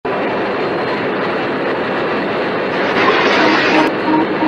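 Steady rushing background noise of an airliner flight deck, as on a cockpit voice recording, growing louder about three seconds in, with a sharp click just before the end. A repeating warning tone starts to sound just before the end.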